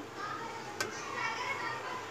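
Faint children's voices in the background, with a single sharp click a little under a second in.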